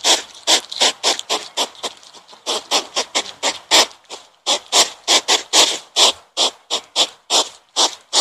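European hedgehog snuffling as it forages nose-down in grass: a fast run of short, breathy huffs and sniffs, about three or four a second.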